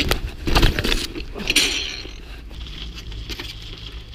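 Bicycle rattling and its tyres skidding over snow-covered paving stones as the rider spins the bike: sharp knocks at the start and a burst of scraping in the first two seconds, then quieter rolling with a few light clicks.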